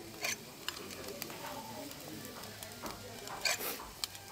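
A whipped-cream siphon hisses as it pipes foam onto a spoon held in a steaming cold bath, over a steady faint sizzle and scattered small clicks. Two short, louder spurts of hiss come, one just after the start and one near the end.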